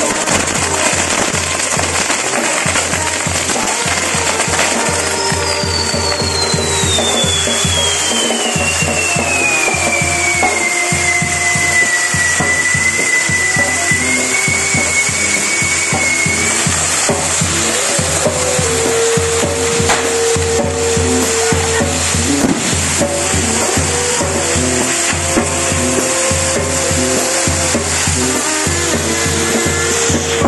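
Spinning firework wheels on a castillo burning with a continuous loud hiss and crackle of their spark fountains. About five seconds in, a long whistle starts high, falls in pitch and then levels off, lasting around ten seconds.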